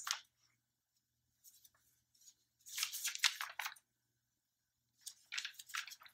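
Brief rustling and crackling from something being handled, lasting about a second, about three seconds in, with a smaller burst near the end.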